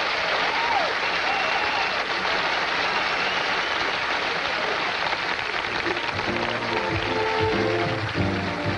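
Studio audience applauding, with game-show music coming in about six seconds in.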